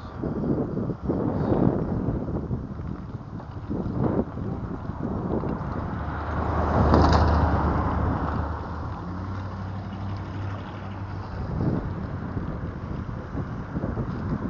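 Rough ride on an electric bike over cracked, potholed pavement: wind rushing on the microphone and tyre and frame rattle with frequent knocks from bumps. A louder rush with a low hum comes about seven seconds in.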